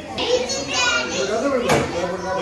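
Children's voices chattering and calling out in a crowd, high-pitched and overlapping, with one brief sharp sound near the end.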